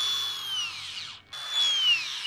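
Hilti Nuron cordless angle grinder run up briefly twice, each time its high whine holding steady and then falling away within about half a second as the disc stops quickly.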